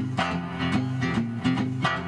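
Acoustic guitar playing a blues lick in E: picked notes over ringing low strings, several plucks a second.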